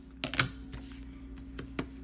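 Scissors snipping through thin fabric: a quick run of sharp clicks about a quarter of a second in, then a few single snips.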